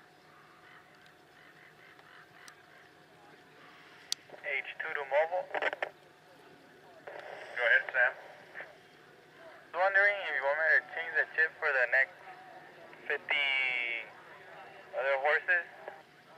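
Low background noise with a faint steady tone, then, from about four seconds in, a person's voice speaking in short phrases with pauses between them.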